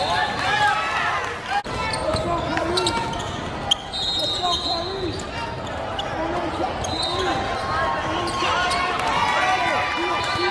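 Basketball game in a large, echoing hall: a ball bouncing on the wooden court and sneakers squeaking, over scattered voices of players and spectators.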